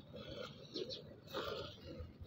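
Hand-milking a cow into a steel bucket of frothy milk: faint, irregular hissing squirts as the milk streams hit the foam, a few each second.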